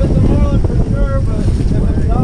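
Wind buffeting the microphone over the low, steady rumble of an offshore sportfishing boat under way, with white water churning in its wake.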